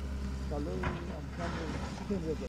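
Diesel engine of an XCMG crawler excavator running steadily, a low hum, with faint voices over it.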